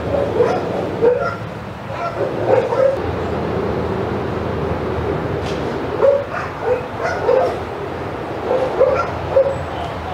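A dog barking and yipping in short calls, grouped in small clusters every second or so, over a steady background noise.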